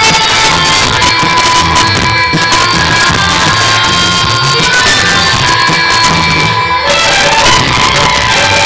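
Loud dance music with a steady beat, played over a stage sound system.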